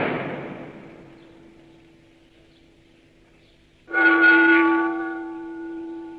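Instrumental music: a crash at the start that fades over about two seconds above a held low note, then a loud sustained horn-like chord that swells in about four seconds in.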